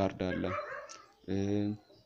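A man's voice making short, hesitant sounds, including one held 'uh' about a second in, between stretches of a lecture.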